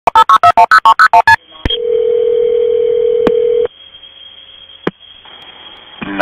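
Telephone touch-tone dialing: about ten quick keypad beeps, then a single two-second ringing tone on the line. It is followed by faint line hiss with a few clicks.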